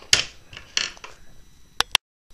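Hand tools being handled and set down on a tabletop: a few sharp clicks and knocks, with two quick ones close together near the end.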